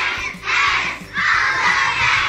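A class of young children shouting together in three loud bursts, over background music with a steady beat.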